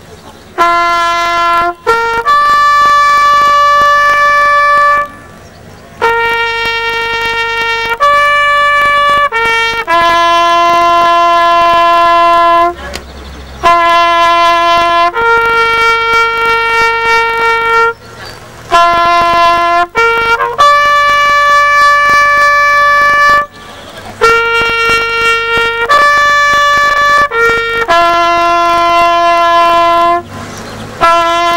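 Solo trumpet playing a slow ceremonial bugle-style call: long held notes on only a few pitches, each phrase led in by one or two short pick-up notes, with brief pauses between phrases.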